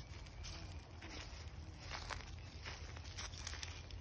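Faint footsteps crunching through dry leaf litter, several steps in a row, over a low steady rumble.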